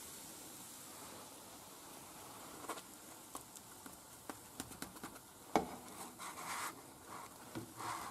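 Plastic spatula and fingers handling a ham-and-cheese crepe as it is folded over in a non-stick frying pan: faint rubbing and scraping with scattered light clicks, and a sharper knock a little past the middle. A faint steady sizzle from the pan in the first couple of seconds.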